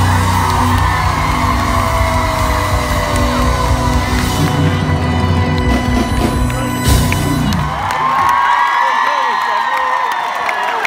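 Live band playing a song at a concert, heard loud and crowd-side through a phone microphone, with the audience singing and shouting along. About eight seconds in the band stops and the crowd cheers and whoops.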